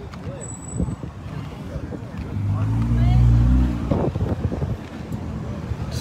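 A car engine passing close by, swelling for about a second and a half in the middle and then fading, over the murmur of voices in the lot.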